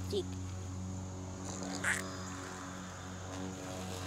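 A steady low mechanical hum throughout, with a short rustle or scrape about two seconds in.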